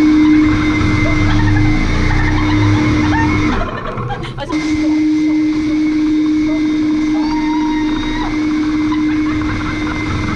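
Leaf blower running with a steady whine, blasting paper off industrial blue rolls mounted on a paint roller at its nozzle. It drops out briefly about three and a half seconds in and comes back about a second later.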